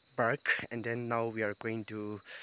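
A man's voice talking close to the microphone, over a steady high chirring of crickets.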